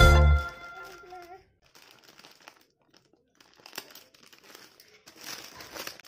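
Background music stops about half a second in, its last note fading away. After a near-silent pause, a clear plastic bag rustles and crinkles faintly as it is handled, until the music starts again at the end.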